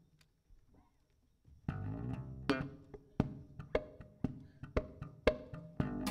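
Near silence, then about two seconds in a live band starts playing: electric bass and plucked guitar with a sharp percussive click on the beat, about two a second.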